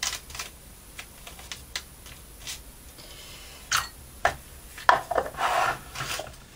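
Hands and a glue brush working PVA-soaked paper on a cutting mat: soft rubbing with scattered light taps, then a short run of louder knocks and rustling about five seconds in.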